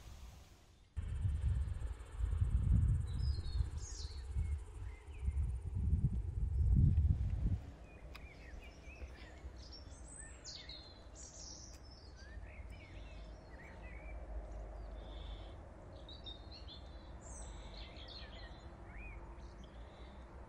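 Small birds chirping and calling, in short high chirps scattered through. A loud low rumble is the loudest sound for the first several seconds and cuts off abruptly about seven seconds in.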